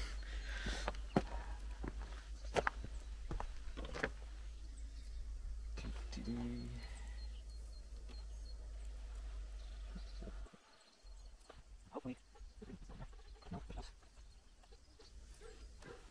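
Scattered light clicks and knocks of hands fitting a push-in cooling-fan temperature sensor in a car's engine bay, over a low steady rumble that stops about ten seconds in. About six seconds in comes one short animal call.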